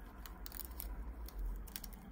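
Soft handling noise with a few small scattered clicks as gloved hands roll a strip of nail transfer foil back around its small tube.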